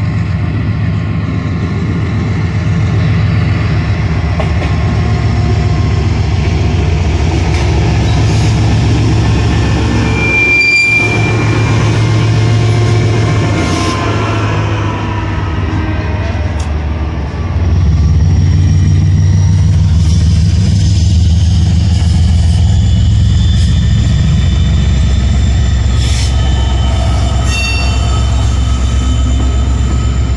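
A freight consist of three diesel-electric locomotives, a GE ES44AC and two EMD SD70ACe units, passing close by at low speed with their engines running in a steady heavy rumble. The rumble gets louder about seventeen seconds in. Brief high-pitched wheel squeals come from the rails.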